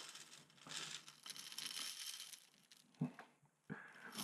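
Honey Nut Cheerios pouring out of a bowl onto wet concrete: a faint, dry rustle of cereal pieces sliding out and landing for about three seconds, followed by a couple of brief soft sounds near the end.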